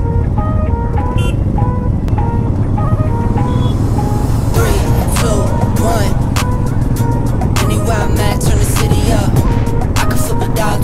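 Background music: a stepped melody, joined about halfway through by a beat and a vocal line. Underneath it runs the low drone of Royal Enfield motorcycles riding off in a group.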